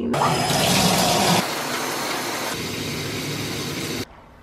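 Shower running: water spraying in a steady rush, strongest for about the first second and a half. It cuts off suddenly at the end.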